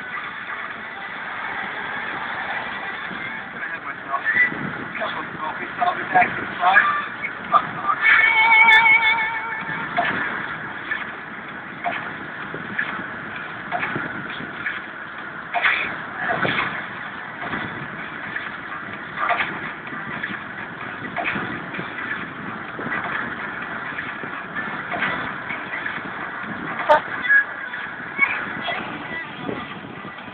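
Road and traffic noise from inside a car in slow, crowded city traffic, with indistinct voices underneath. A brief warbling tone sounds about eight seconds in.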